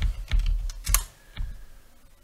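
A few quick keystrokes on a computer keyboard, bunched in the first second, typing a node name into a search box, with one fainter click shortly after; then it goes quiet.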